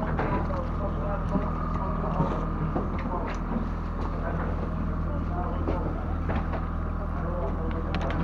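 A boat's engine running steadily, a low even hum, with a few faint clicks over it.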